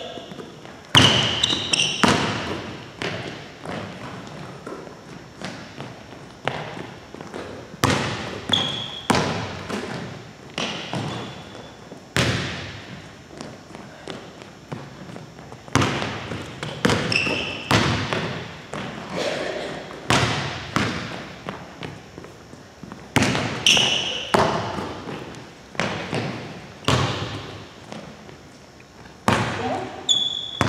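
Basketball bouncing on a hardwood gym floor during dribbling and passing, with sharp thuds at irregular intervals of one to two seconds that echo in the large hall. Sneakers give short high squeaks on the floor as the players plant and cut.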